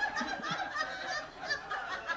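An audience laughing and chuckling, several voices overlapping at a moderate level.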